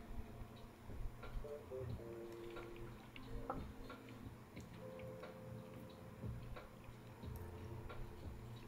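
Faint, scattered ticks and small clicks in a quiet room, with a slightly louder knock about three and a half seconds in as a glass tasting glass is set down on a wooden board.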